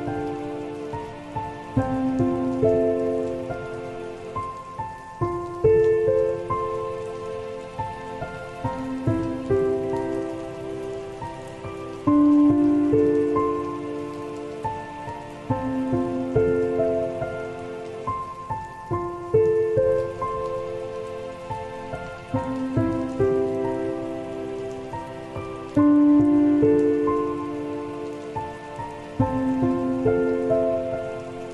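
Slow, soft solo piano playing sustained chords and melody notes that ring and fade, a louder phrase coming in about every seven seconds, over a steady bed of recorded rain falling.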